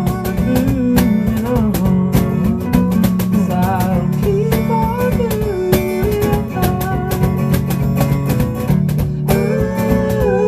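Acoustic guitar strummed in a steady, driving rhythm, with a sung vocal line gliding over it.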